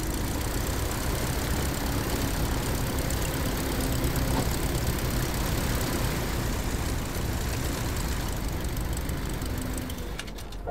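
Tiger Moth biplane's four-cylinder engine and propeller running at low power on the ground, a steady, dense rumble.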